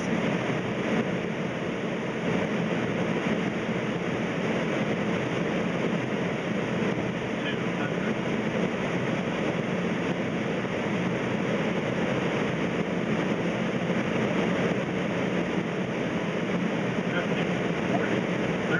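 Steady rush of airflow and engine noise on the flight deck of a Boeing 767 on final approach, holding an even level with no distinct events.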